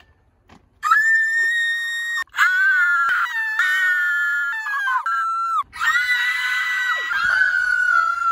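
Two young women screaming in excited greeting: long, high-pitched shrieks held for seconds at a time. The screaming starts about a second in and pauses briefly twice.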